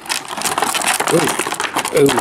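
Thin clear plastic packaging crinkling and crackling in quick irregular clicks as it is handled along with a plastic action figure.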